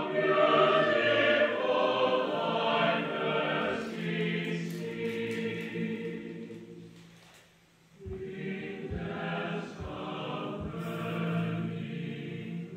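Choir singing in long held phrases. The first phrase dies away about seven seconds in, and the next begins about a second later.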